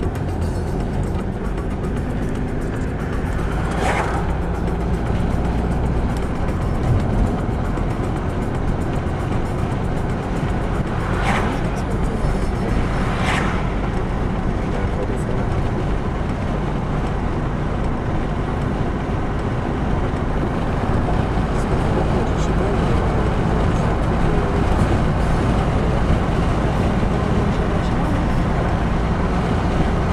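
Car interior road noise while driving: a steady engine and tyre rumble. Three brief louder swishes stand out, one about 4 s in and two close together around 11 and 13 s.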